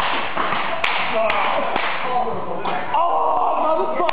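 A group of people shouting and whooping, with sharp slaps of cloth belts lashing a bare back: two about a second in and another at the end.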